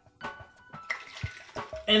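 Pineapple juice being poured into a stainless steel cocktail shaker tin, a liquid hiss that runs for over a second.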